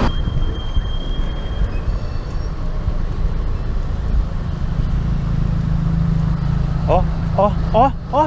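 Steady rumble of road traffic and wind on the microphone while riding a bicycle beside a busy road. Near the end, a man's voice calls out in short bursts.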